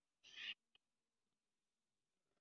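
Near silence: room tone, with one brief faint hiss about a quarter second in.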